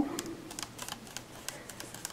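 Paintbrush dabbing and mixing acrylic paint on a foam-plate palette: a run of light, irregular clicks and taps.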